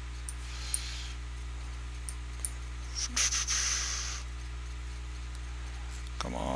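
Steady low electrical hum with a few sharp computer-mouse clicks, and a short breathy hiss about three seconds in.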